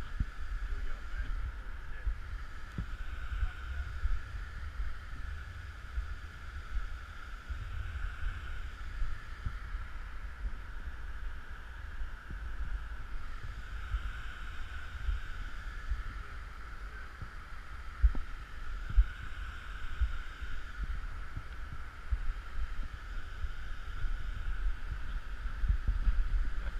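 Steady rush of muddy flash-flood water pouring down a sandstone waterfall, under a low wind rumble on the microphone, with a couple of sharp knocks about two-thirds of the way through.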